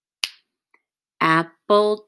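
A single finger snap about a fifth of a second in, keeping the beat through a rest, then a woman's voice speaking 'apple' in rhythm near the end.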